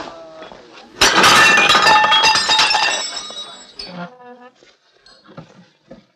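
Glass smashing loudly about a second in, followed by shards clinking and ringing as it dies away over about two seconds.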